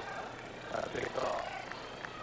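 Indistinct voices over a steady background hiss, with a short burst of voices about a second in.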